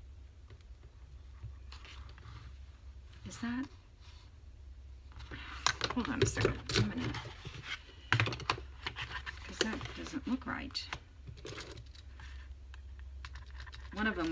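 A quick run of clicks and clatter from craft materials being handled on a cutting mat: a clip-held fabric journal cover picked up and moved, and a metal hole punch. A few muttered words are mixed in.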